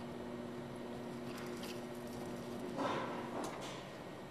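American Beauty resistance soldering unit humming steadily while current heats a copper cable lug between its carbon electrodes, with a few faint crackles. The hum cuts off with a short knock about three seconds in as the current is switched off and the joint is done.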